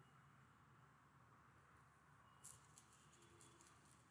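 Near silence: room tone, with a short run of faint, quick clicks starting a little past halfway.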